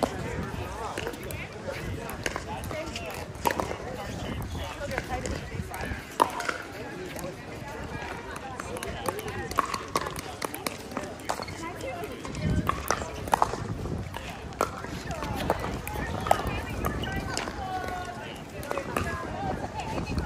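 Pickleball play: sharp pops of paddles striking the hollow plastic ball, and the ball bouncing on the hard court, coming at irregular intervals, with voices chattering in the background.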